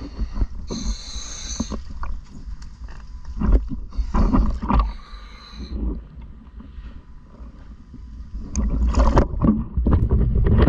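Underwater, a diver breathing on a regulator: a hissing inhalation about a second in and another around four to six seconds, with bubbling, gurgling exhalations between and again near the end, over a low rumble of water against the housing.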